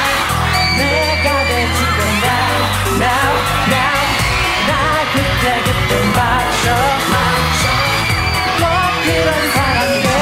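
Male K-pop group singing live over a pop backing track with a steady drum beat.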